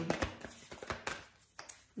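A deck of oracle cards being shuffled and drawn by hand: a quick run of soft clicks and taps, fading out about halfway through.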